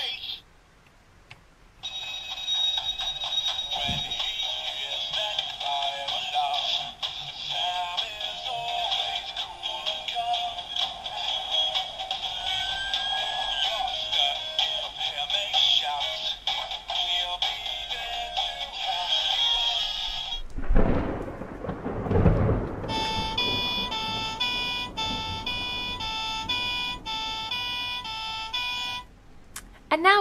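Electronic sound unit of a Fireman Sam Jupiter toy fire engine playing through its small, tinny speaker: music with voices, then a loud rushing sound about two-thirds of the way in, then a run of electronic tones stepping in pitch that stops shortly before the end.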